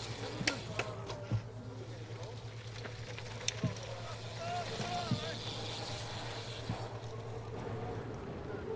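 Outdoor race-side ambience: indistinct spectators' voices over a steady low hum and background noise, with a few sharp clicks.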